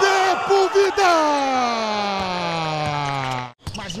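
A TV basketball commentator's long drawn-out shout, beginning after a second of rapid speech and sliding steadily down in pitch for about two and a half seconds before it is cut off abruptly near the end. It is the commentator celebrating a Biguá basket on an open drive.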